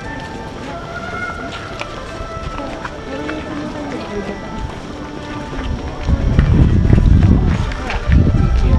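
Many overlapping voices of a crowd talking, with music underneath. About six seconds in, a loud low rumble on the microphone takes over.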